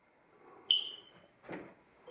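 A single short, high-pitched chirp, followed by a soft knock about a second later.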